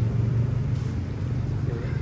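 A low, steady rumble runs throughout, with a short spoken word near the end.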